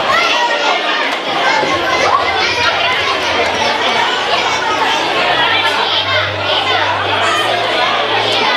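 A large crowd of children chattering and calling out at once, a steady hubbub of many overlapping young voices with no one voice standing out.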